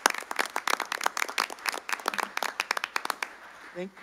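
A small group of people clapping by hand, irregular claps that die away about three seconds in.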